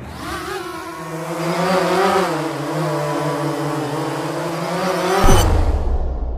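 Intro sound effect: a steady motor-like hum whose pitch wavers slightly, cut off about five seconds in by a deep low boom that slowly dies away.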